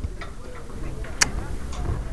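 A few faint ticks and one sharp click about a second in, over a low handling rumble.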